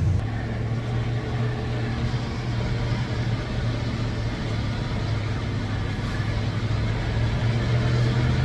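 Pickup truck engine running at low speed, heard from inside the cab: a steady low hum that grows slightly louder near the end.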